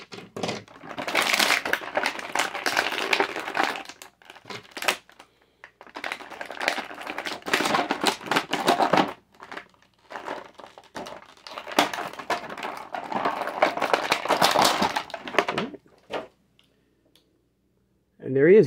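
Plastic action-figure packaging crinkling and rustling as the figure is pulled out of it, with many small clicks and crackles. It comes in three long bouts with short gaps between and stops about two seconds before the end.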